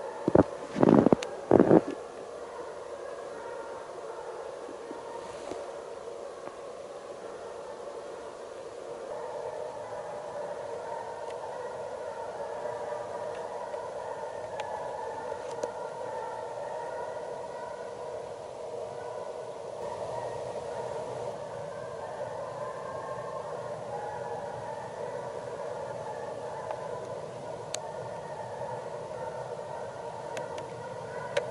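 Russian hounds baying at a distance as they run a hare, several voices overlapping in a continuous wavering chorus. A few loud short sounds close to the microphone come in the first two seconds.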